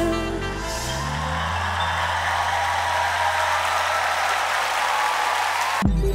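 A live band's closing chord, its low note held for several seconds as the singing stops, with studio audience applause building from about a second in. Both cut off abruptly just before the end.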